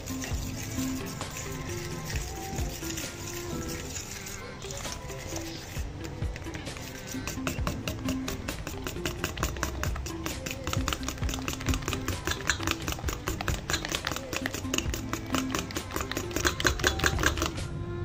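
Fork beating a wet batter mixture in a stainless steel bowl, the metal tines clicking rapidly against the bowl. The clicks grow denser in the second half, over background music.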